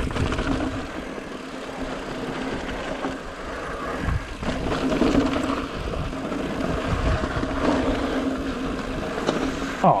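Mountain bike ridden fast over a dirt and rock trail: tyres rolling and crunching, with the bike rattling and knocking over bumps and a steady hum throughout. Wind rumbles on the camera microphone, and the rider says 'Oh' at the very end.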